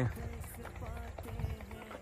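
Soft, irregular footsteps on dry, loose field soil, heard as scattered light scuffs and clicks.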